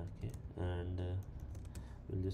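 A few keystrokes typed on a computer keyboard, with a long hummed "uh" from the typist about half a second in.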